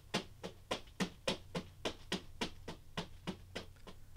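Two floggers kept going in a Florentine weave, their falls striking a mannequin in a steady, even rhythm of about four to five strikes a second.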